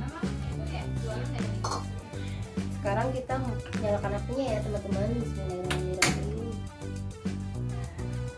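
Background music with a steady guitar and bass line, with some voice-like sounds in the middle, and one sharp click or knock about six seconds in.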